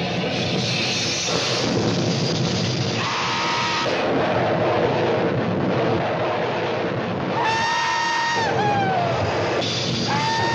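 Film soundtrack in a bomber's bomb bay: a steady, loud mix of aircraft engine drone and music. Near the end a held, pitched tone with overtones sounds and slides downward in pitch.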